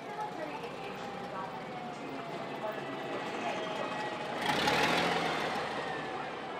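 Double-decker tour bus engine running as the bus passes close by and pulls away. A louder rushing noise comes in about four and a half seconds in.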